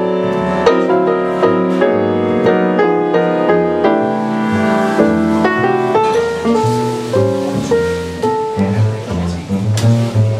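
Jazz duo of grand piano and double bass playing a swing standard: piano chords over plucked bass notes. About six seconds in, the piano thins out and the bass notes stand out more.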